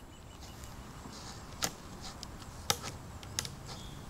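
A few light plastic clicks, the clearest a little after a second in, near three seconds and a moment later, as the flip-up face cards of a Guess Who game board are tapped or flipped down.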